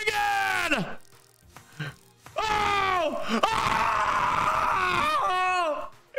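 A man yelling and screaming without words in long cries that fall in pitch, with a short pause about a second in. The cries are excited whoops at a big slot win.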